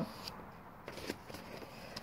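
Faint rustling and a few soft ticks of paper pages being handled while looking for the next handwritten poem.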